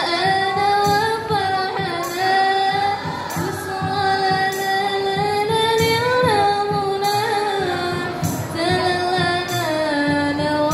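Marawis performance: a female voice sings a long, drawn-out melody with slides and ornaments, over steady hand-struck marawis frame drums.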